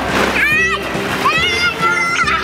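Plastic balls in a ball pit rustling and clattering as a child plunges in, with two high-pitched squeals from the child over background music.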